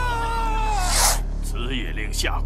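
A man's long, drawn-out wailing cry, falling in pitch, over dramatic music. About a second in, a short loud rush of noise cuts it off.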